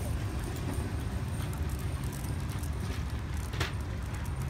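Steady low outdoor rumble of background noise, such as traffic or wind, with a single light click about three and a half seconds in.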